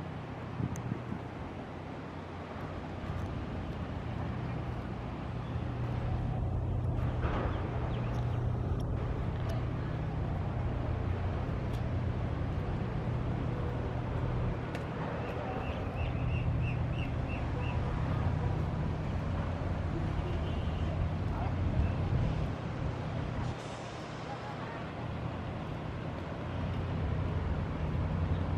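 Steady low rumble of city road traffic, with a short run of about seven quick high-pitched pips around the middle.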